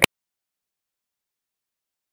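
Silence: a brief click as the recording cuts off at the very start, then nothing at all.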